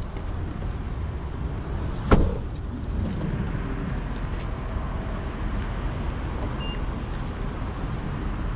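The driver's door of a Nissan Note is shut with one solid thud about two seconds in, over a steady low background rumble.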